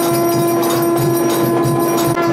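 Temple aarti: a conch shell blown in one long steady note, over fast, continuous ringing of bells and clashing hand cymbals.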